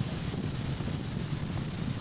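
Steady, mostly deep noise of a Falcon 9 first stage's nine Merlin engines in flight, heard from the ground during ascent.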